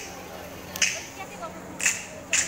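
Sharp, hissy clap-like beats, one a second, two in all, over a steady low hum and faint voices.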